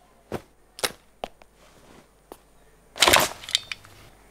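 Handling sounds of packing a suitcase on a bed: three short sharp clicks about half a second apart, then a louder clattering rustle about three seconds in, followed by a couple of quick clicks.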